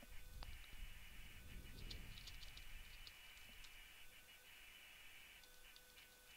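Near silence: faint room hum with a few faint, scattered clicks of computer keyboard keys.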